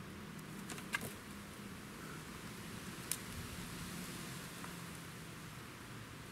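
Quiet steady background hiss with a faint low hum, broken by two brief sharp clicks about two seconds apart.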